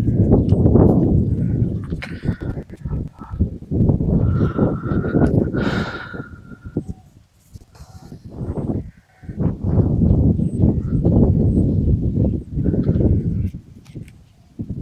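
Gusty wind buffeting the microphone, a loud low rumble that swells and fades in gusts and drops away for a moment about seven seconds in.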